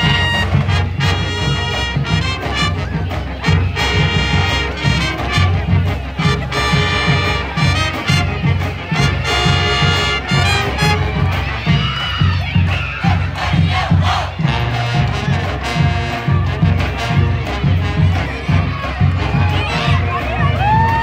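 A high school pep band playing a brass tune over a steady drum beat, with a crowd shouting and cheering along. The brass drops out about halfway through, leaving the drums and the crowd's yelling.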